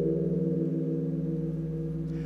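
A large Korean Buddhist temple bell ringing on after a single strike, its deep layered tones fading slowly. It is the toll of a New Year's Eve bell.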